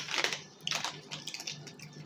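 A Pringles Mingles snack bag crinkling and crackling as a hand reaches into it for a puff, in a few quick rustles in the first second.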